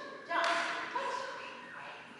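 Speech only: a voice calling the cue "touch, touch."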